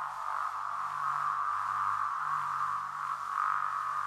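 Novation MiniNova synthesizer holding a steady band of hissy, filtered noise in the middle register, with a faint low hum beneath it.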